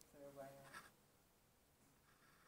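A man's voice, one short sound in the first second, then near silence with faint room noise.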